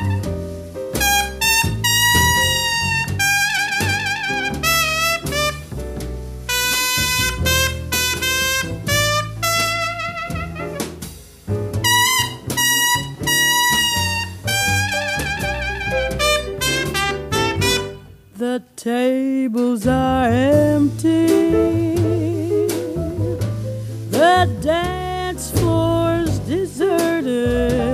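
Swing jazz recording: a trumpet plays a solo with vibrato over the band for most of the passage. The music drops away briefly about eighteen seconds in, and a singer then comes in.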